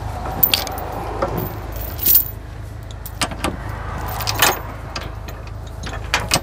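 Steel tow chain clinking and rattling as it is fed down through a bus's frame, with a handful of short, sharp metal clanks over a steady low engine hum.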